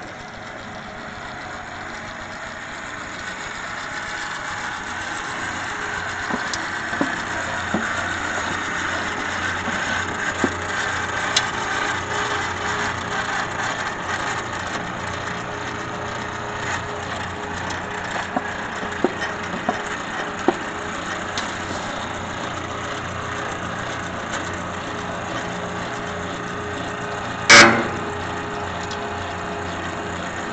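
Electric pipe-threading machine running steadily as its die cuts threads on a length of air-line pipe, getting louder over the first several seconds and then holding level, with small clicks throughout. About 27 seconds in there is one short, loud clank.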